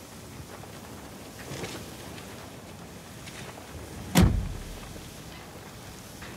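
Steady low background noise, broken a little over four seconds in by one loud, sudden thump with a short low-pitched tail.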